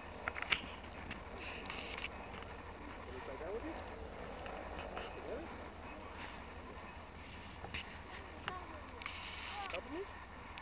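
Snow swishing and crunching as a dog plows and burrows through deep powder, with short bursts of hiss as she pushes through. A steady low wind rumble sits on the microphone underneath.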